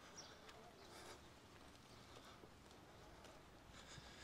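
Near silence: faint outdoor street ambience with a couple of very faint brief ticks.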